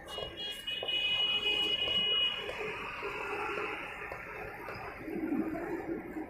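A steady high-pitched tone, like a buzzer, for about two seconds, over a constant background hiss.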